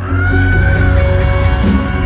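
A full live band comes in loud right at the start, with drums and bass heavy underneath, and a voice holds a high sung note over it during the first second.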